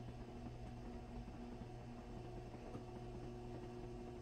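Electric hospital bed's motor humming faintly and steadily as the head section is lowered flat.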